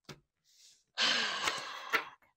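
A person sighs: a faint intake of breath, then a breathy exhale lasting about a second, starting about a second in.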